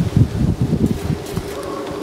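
Wind buffeting the microphone while riding a bicycle along a paved path: low, irregular rumbling thumps.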